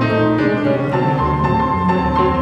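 Jazz piano and double bass duo playing live: grand piano chords and melody over an upright bass line.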